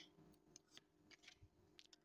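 Near silence with a few faint, short clicks of tarot cards being handled as a card is drawn from a deck spread on a table.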